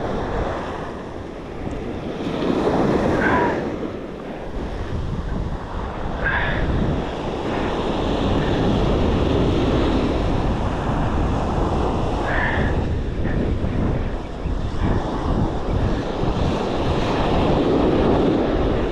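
Surf breaking and washing up the sand, with wind buffeting the microphone, heavier from about four seconds in.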